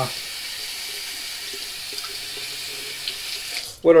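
Water running steadily from a bathroom sink tap, shut off abruptly just before the end.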